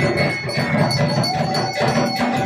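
Fast, continuous drumming with a metal bell ringing steadily over it; a held tone joins about halfway through.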